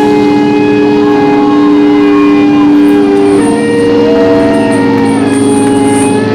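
Distorted electric guitars holding a loud ringing chord, with feedback tones that slowly shift in pitch and no drum strokes under them.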